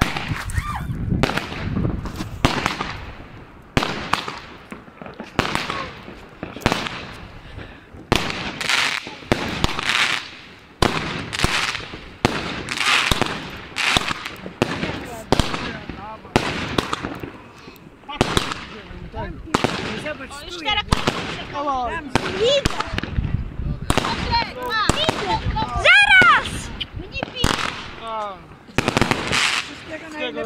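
Fireworks going off in a dense, irregular volley of bangs and crackles, some close and sharp, others more distant. Wavering whistle-like tones sound among them in the second half, loudest about 26 seconds in.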